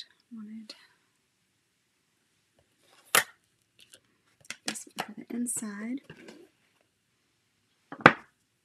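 Plastic clicks and clatter from handling a clear-stamp case and its stamps: one sharp click about three seconds in, a few smaller ones, and another sharp click at the very end. Low muttered speech comes in the middle.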